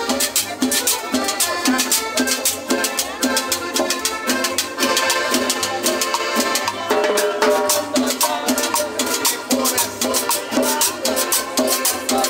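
Small live band playing a Latin dance number, with upright bass, guitar and a drummer on snare and cymbal keeping a steady, even beat.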